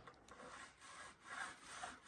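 Faint, rhythmic rasping strokes, about two and a half a second, of snow being sawn through on the roof edge.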